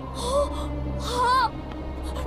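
Two short gasping exclamations from a cartoon character's voice, about a second apart, over steady background music.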